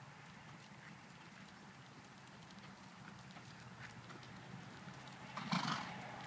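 Thoroughbred horse trotting on a sand arena, its soft hoofbeats growing louder as it comes closer. Near the end there is a short, loud rush of noise.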